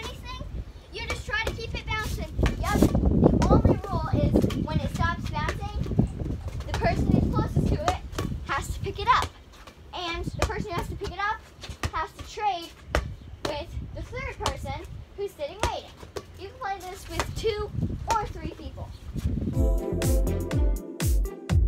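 Children calling out and laughing during a ball game, with a rubber playground ball repeatedly bouncing on concrete and being slapped back by hand in sharp thumps. Music with a steady beat comes in at the very end.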